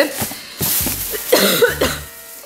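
Thin plastic bag rustling and crinkling as it is handled around a cardboard shoe box, followed about one and a half seconds in by a brief vocal sound from the person.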